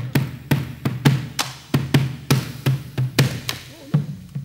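Bombos legüeros, the Argentine wooden frame drums with rope-tensioned hide heads, played with sticks in a steady rhythm of about three strokes a second. Deep booms from the heads mix with sharp wooden clicks.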